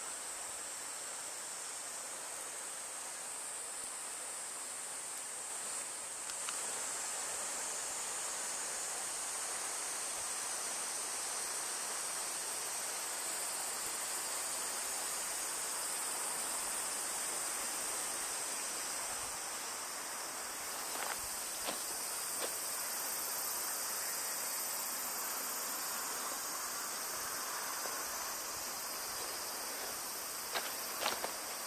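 A steady, high-pitched chorus of insects, with a few faint clicks about two-thirds of the way through.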